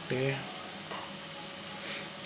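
Sliced onions frying in hot oil in an aluminium pressure cooker, a steady, even sizzle.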